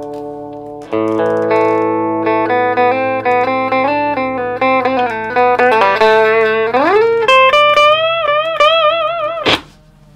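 Electric guitar played through a 1957 Fender Deluxe tube amp with a replacement Jensen speaker. A chord rings and fades, then about a second in comes a fast run of single picked notes. Near seven seconds a string bend rises in pitch, and held notes with vibrato follow, cut off sharply about half a second before the end.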